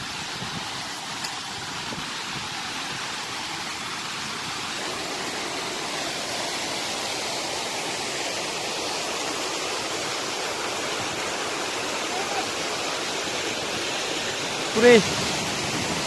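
Steady rushing of a mountain waterfall, an even noise that grows slowly louder. A person's voice is heard briefly about a second before the end.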